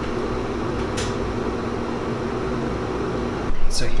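Steady hum of running lab equipment, with a few low tones in it and a single click about a second in.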